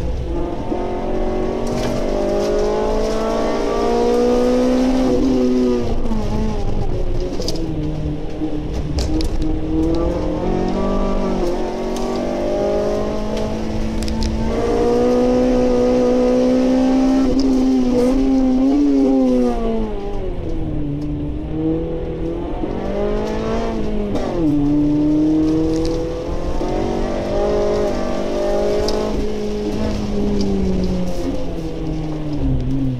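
Honda Civic Type R FN2's four-cylinder engine heard from inside the cabin, its revs climbing under hard acceleration and dropping away again, three times over.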